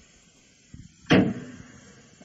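A car door slamming shut once with a sharp thud, preceded by a fainter knock.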